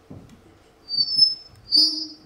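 Two short, high-pitched whistle-like tones, one about a second in and a louder one near the end.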